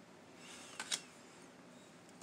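A tarot card slid and set down on a glass tabletop: a short scrape, then two light taps just before the one-second mark.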